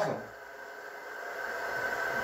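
Soundtrack of the video playing on the television: a faint hissing drone with a steady high tone, slowly growing louder.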